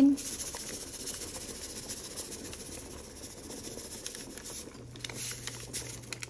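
Pork broth boiling in a stainless steel stockpot: a steady bubbling hiss with fine crackles. A faint low hum comes in near the end.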